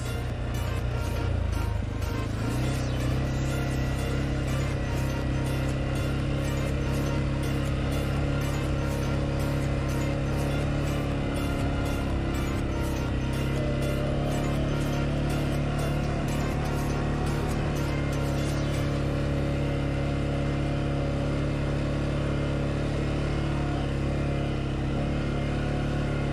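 CF Moto 520L ATV's single-cylinder engine running steadily while riding across grass, under background music with a steady beat that stops about three quarters of the way through.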